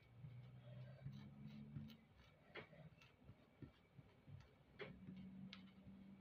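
Near silence: a faint low hum with a few scattered faint clicks.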